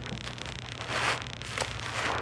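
Thick, wet laundry-soap suds being squeezed and squished by hand, making a crackling, fizzing hiss that comes in bursts. The loudest burst is about a second in.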